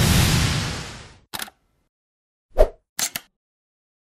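Animated logo sound effect: a noisy whoosh that swells and fades over about a second, followed by a short crackle, a low thud and a couple of sharp clicks.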